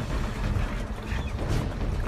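A fishing reel being wound in under strain as a fish is fought at the boat, over a steady low rumble of wind on the microphone.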